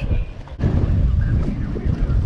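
Wind buffeting the microphone, an uneven low rumble that dips briefly about half a second in.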